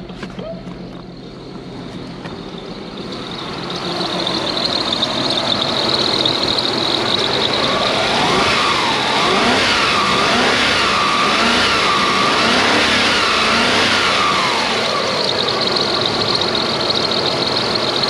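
Toyota 1UZ-FE V8 running on its new fuel pump. It builds up over the first few seconds, then its throttle is worked by hand and it revs up and down repeatedly, about once a second.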